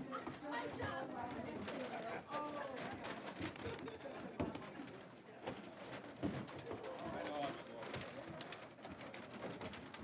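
Indistinct chatter of a group of people talking at once. Brown paper grocery bags crackle and canned goods knock as food bags are packed.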